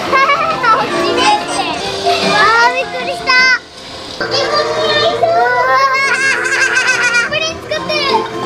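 Young children talking and exclaiming excitedly in high voices over the ride's background music, with a short lull about halfway through.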